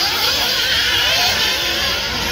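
Radio-controlled off-road buggies racing on a dirt track, their motors making a steady high-pitched whine.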